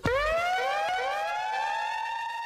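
Electronic outro sound effect that starts suddenly and is louder than the talk before it: a pitched tone that rises quickly and then levels off, like a siren winding up. More rising tones join it about half a second and a second in, and the tones hold.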